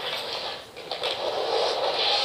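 Hockey film trailer soundtrack played through a portable DVD player's small speaker: a steady noisy rush without words that dips sharply for a moment just before a second in.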